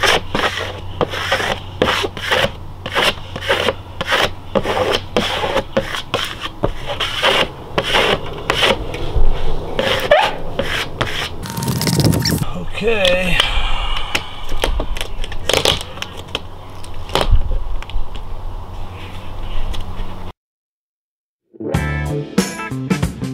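Quick repeated scraping strokes of a hand squeegee rubbing a vinyl decal down through its transfer tape, about two to three strokes a second, burnishing it onto the trailer door before the tape is peeled. The scraping cuts off suddenly near the end, and after a second of silence a guitar music track begins.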